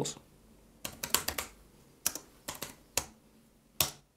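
Typing on a computer keyboard: about ten separate keystrokes, some in quick runs, as a short terminal command is typed. The last keystroke, near the end, is the loudest, as the command is entered.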